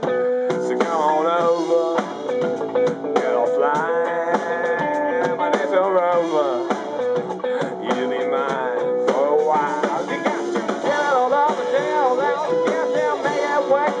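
Live rock band playing an instrumental break: an electric guitar plays a lead line with notes that bend up and down, over bass guitar and a drum kit.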